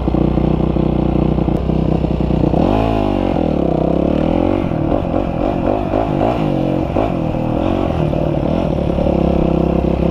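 Dirt bike engine running at a steady pitch, then from about three seconds in revving up and down again and again as it is ridden.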